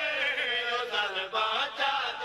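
A group of men chanting a Saraiki devotional qaseeda together, their voices holding drawn-out notes, with two brief breaks just past the middle.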